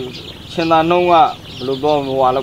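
A flock of young layer chicks peeping continuously in a brooder house, a steady high chatter of many small chirps. A voice speaks over it.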